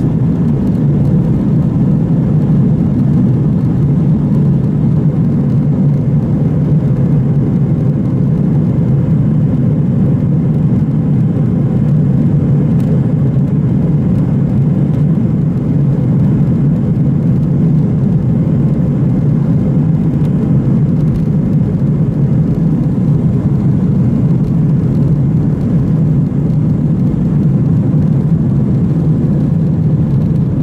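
Airbus A320's jet engines at takeoff power heard from inside the cabin over the wing: a steady, loud, low rumble through the takeoff roll and lift-off.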